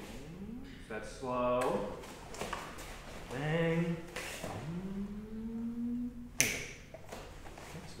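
Three drawn-out shouted voice calls. The longest is held for about a second and a half, rising and then steady in pitch. Just after it comes a single sharp slap or clap, the loudest sound.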